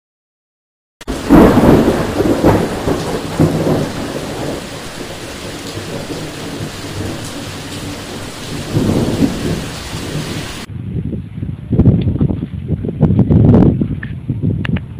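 Thunder: a loud crack about a second in that rolls off into a long rumble, with steady rain falling, and another rumble swelling near the middle. Near the end, after a cut, more loud low rumbles.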